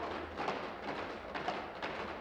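Indistinct hubbub of a large chamber, with scattered light knocks and thuds at irregular intervals.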